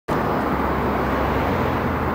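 Steady outdoor rumble, like traffic or an idling engine, with a low hum underneath, cutting in abruptly just after the start as raw camcorder sound.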